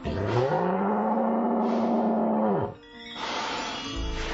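A cartoon bull's bellow played back slowed down: one long call that rises in pitch, holds, and drops away after about two and a half seconds. A rushing noise follows near the end, with background music throughout.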